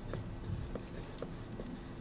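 A pen writing block capital letters on paper: light scratches and small taps at irregular intervals as each stroke is drawn.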